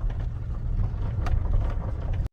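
Car interior noise while driving slowly: a steady low rumble of engine and tyres heard from inside the cabin.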